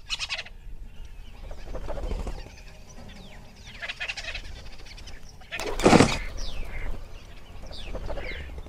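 Woodland ambience of birds calling, with short falling calls over a low background haze, from an animation's soundtrack. About six seconds in comes one louder rush of sound lasting about half a second.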